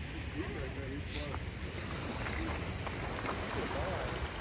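Steady wind on the microphone and small waves washing against a rocky shoreline, with a short laugh and faint voices in the background.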